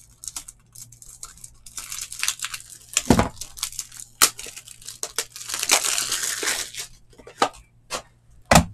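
Plastic packaging being crinkled and torn open by hand, in stretches of crackling, with a sharp knock just after three seconds and another just after four.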